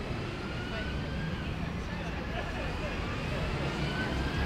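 Street ambience dominated by a double-decker bus's engine running as it drives past, with a faint whine that rises slowly in pitch, over distant voices of passers-by.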